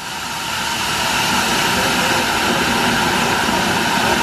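Wilderness Lodge's man-made geyser erupting: a steady rushing hiss of the water jet, building over the first second or so and then holding.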